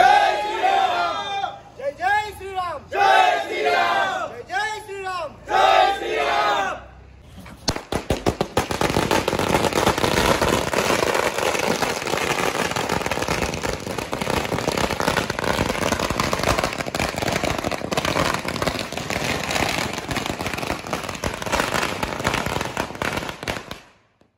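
A crowd shouting slogans in unison, with repeated cries of "Jai", for about seven seconds. Then firecrackers start bursting in a rapid, continuous crackle of pops that runs for some sixteen seconds and stops just before the end.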